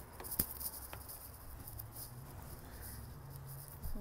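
Quiet rustling and handling noise in a pickup's rear cab, with a sharp click about half a second in and a smaller one about a second in, over a low steady hum.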